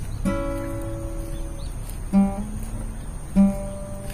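Music: an acoustic guitar strummed, with held chords and strong strokes about two seconds in and again near three and a half seconds.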